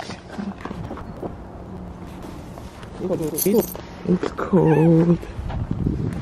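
A person's voice making two short wordless sounds, the first about three seconds in and the second, longer one about four and a half seconds in.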